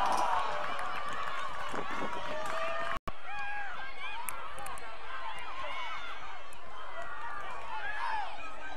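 Live field sound of a women's soccer match: many voices of players and spectators calling and shouting over one another. The sound drops out abruptly for a split second about three seconds in, at a cut.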